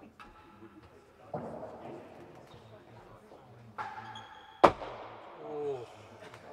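Real tennis ball struck by rackets and rebounding off the court's walls and penthouse during a rally. The loudest is one sharp crack about four and a half seconds in, and a voice calls out near the end.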